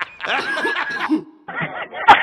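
A laughing meme sound effect: a man chuckling in a short bout. After a brief break, a second, duller-sounding clip starts about a second and a half in.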